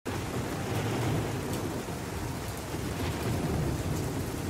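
Thunderstorm: rain pouring steadily under a low, wavering roll of thunder, starting suddenly.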